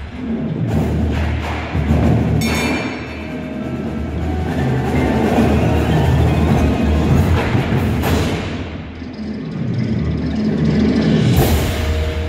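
Indoor percussion ensemble playing its show in a gymnasium: drums and keyboard percussion over sustained low electronic tones from the speakers. Loud crashes come about two and a half, eight and eleven and a half seconds in.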